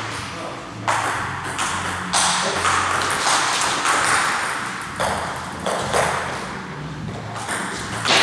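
Table tennis rally: the celluloid-type ball clicking back and forth off the rubber bats and the DONIC table, about two hits a second, each click trailing a short echo in the hall.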